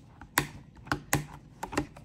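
A clear plastic planner cover being pressed onto the discs of a disc-bound Happy Planner: about five sharp clicks as its punched holes snap over the discs one by one.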